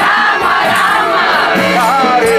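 Crowd singing a kirtan chant together, many voices at once, with percussion keeping a steady beat.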